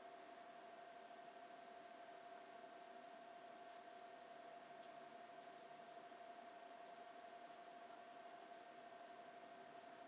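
Near silence: room tone, a faint steady hiss with a thin unchanging hum.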